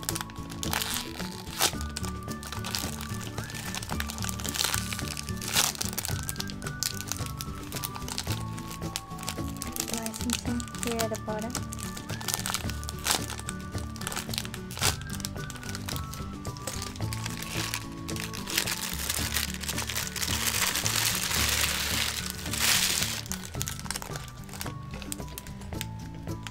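Clear plastic bags around foam squishy toys crinkling and crackling as they are handled, over background music. The crinkling grows denser and louder for a few seconds about three quarters of the way through.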